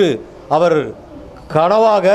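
A man speaking Tamil into a handheld microphone in short phrases, with a pause of about half a second in the middle.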